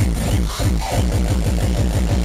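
Hardcore techno played loud over a festival sound system: a fast, unbroken run of distorted kick drums, each hit falling in pitch.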